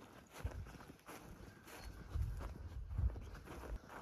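Footsteps on a snow-covered gravel driveway, a person walking at a steady pace, about two soft steps a second, with light handling noise on the phone's microphone.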